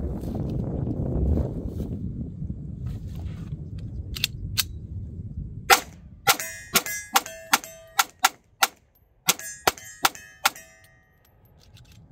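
Wind buffeting the microphone, then a Stoeger STR-9c compact 9mm pistol fired in a rapid string of about a dozen shots, two to three a second, several leaving a metallic ring. The string empties the magazine.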